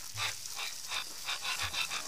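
Wet golden retriever breathing in quick, rhythmic breaths, about three or four a second, over the steady hiss of a garden hose spraying water.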